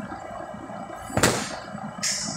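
A rubber bumper plate dropped onto the gym floor: one sharp thud about a second in, with a short fading rattle after it, over steady gym background noise.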